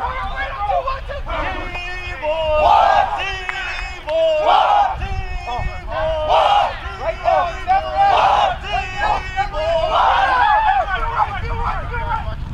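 A group of football players shouting and yelling together on the practice field, with several loud shouts about every two seconds over a babble of voices.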